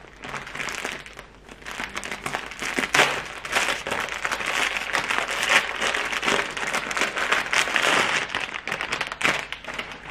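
Plastic and paper packaging crinkling and rustling as hands unwrap a rolled fabric basket liner, a busy crackle from about a second and a half in until near the end.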